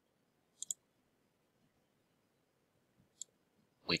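Computer mouse clicks: a quick double click about half a second in, then a single click about three seconds in.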